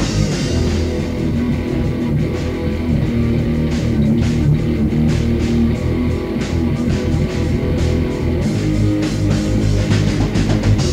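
Instrumental passage of a rock/hardcore band song: electric guitar and bass playing under a drum kit with steady cymbal and drum hits, no vocals.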